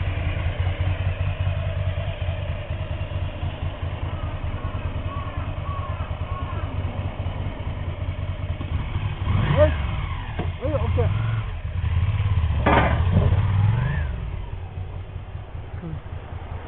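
Ducati Monster 400's air-cooled V-twin idling with a steady low throb, revved up briefly about nine seconds in and again around thirteen seconds in.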